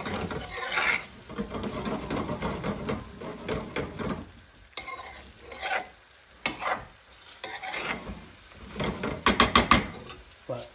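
A metal slotted spoon scraping and stirring thick curry around a metal frying pan, in dense strokes at first and then more sparsely, with a light sizzle. Near the end there is a quick run of sharp metal taps, five or six in under a second.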